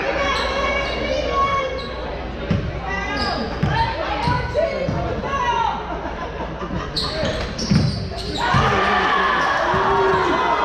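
Basketball bouncing on a hardwood gym floor a few times during play, with shouting voices of players and spectators echoing in the large gym; the noise grows louder near the end.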